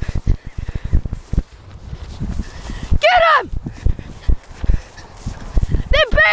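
Running footsteps on grass with jolting thuds and wind from a jostled handheld microphone. About three seconds in comes a single high yelp that rises briefly and falls, from a dog or a person.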